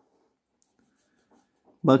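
Felt-tip marker drawing a dashed line on paper: faint, short strokes of the tip on the page. A man starts speaking near the end.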